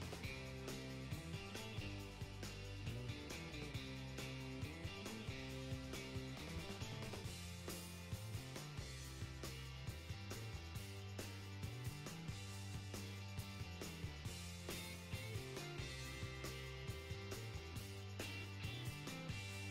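Music with a steady beat.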